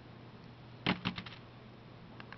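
A quick run of about four light clicks, a second in, from small hard parts of the cord-wrapped tool being handled.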